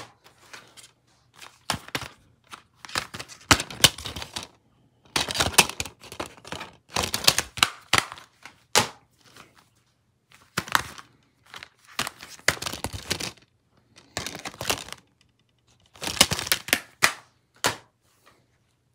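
Plastic DVD cases being handled: a run of clicks, knocks and clattering as cases are picked up, knocked together and slid around, with short gaps between bursts.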